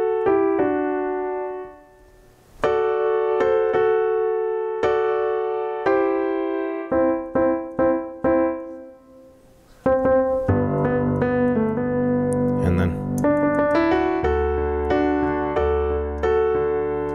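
Piano played slowly, note by note. Two-note right-hand harmonies are struck with short pauses between them. From about ten seconds in, both hands play together, with low bass octaves under the chords.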